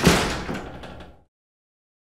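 Sound effect of a metal roll-up garage door slamming shut: one loud clattering bang right at the start that rattles and dies away, then cuts off abruptly after about a second and a quarter.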